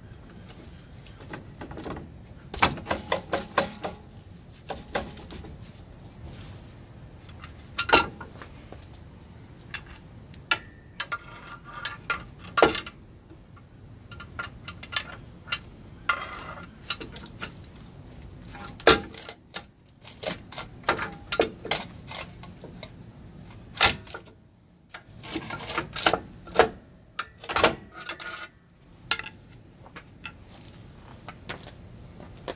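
Irregular metallic clanks, clicks and scrapes of steel air-brake shoes and a steel pry bar being worked into place on a truck's drum brake assembly. Some knocks ring briefly; the sharpest come about 8 and 19 seconds in and in a cluster near the end.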